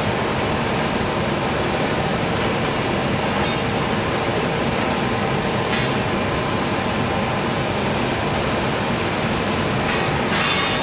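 Steady roar of a coal-fired boiler furnace burning with its firedoor open, with two brief scraping sounds about three and a half and six seconds in.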